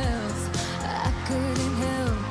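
Synth-pop song with a woman singing a verse over a steady drum-machine beat and synth bass.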